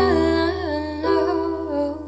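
Woman singing a slow melody that steps down in pitch over a sustained piano chord.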